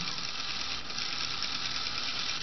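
Steady hiss of background noise, even throughout, with no distinct events.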